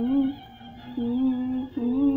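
A young girl humming a tune in short held notes that step up and down in pitch.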